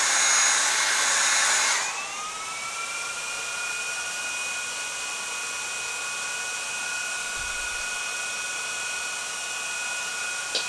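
Black & Decker heat gun blowing, switched off about two seconds in. Then the small cooling fans inside the e-bike hub motor, switched on by the heat-tripped thermal switch, whine up briefly and run on at a steady pitch.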